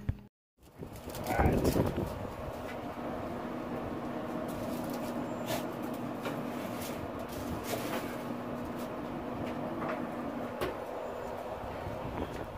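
Traeger pellet grill running with a steady hum while the lid is opened, a wire rack is set onto the grill grates and the lid is shut, with scattered metallic clicks and knocks.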